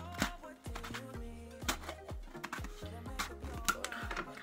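Background music, with several sharp clicks and knocks from a plastic hoof-oil container as its brush lid is worked back on, which proves hard to fit.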